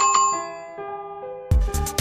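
A bell-like notification chime sound effect rings once and fades over soft synth music, then about one and a half seconds in a loud electronic dance beat with heavy bass kicks starts.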